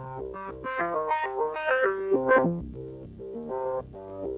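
Tesseract Radioactive Eurorack digital oscillator voice playing a quick run of short, plucked-sounding notes, several a second, with a raw tone full of overtones. Its octave is being stepped down by shifting the attack control.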